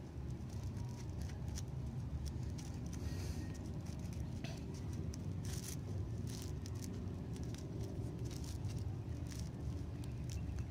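Three-strand rope being handled and its strands tucked by hand for a back splice: scattered faint rustles, creaks and small clicks of fibre against fibre and fingers. Under it runs a steady low rumble.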